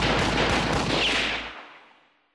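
A rapid volley of gunfire closes the song, a run of close-spaced shots over a low rumble that fades away near the end.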